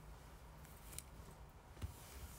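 Quiet room with faint handling sounds over a low hum: a small sharp click about halfway through and a soft knock near the end.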